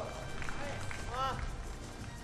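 Gymnastics arena ambience: a steady low hum with a few short voiced calls from people in the hall, the clearest a little over a second in.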